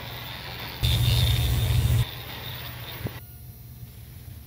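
Analog videotape noise: a steady hiss with a low hum under it. About a second in, a loud low buzz with a thin high whine cuts in and stops abruptly a second later, and a little after three seconds the hiss drops to a fainter level.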